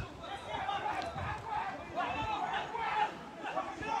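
Spectators chatting: voices talking in overlapping snatches.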